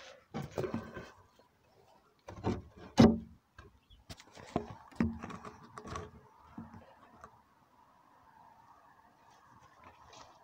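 Handling noise from a camera being gripped and moved by hand: irregular knocks, bumps and rubbing, the loudest bump about three seconds in, settling into a faint steady hum for the last few seconds.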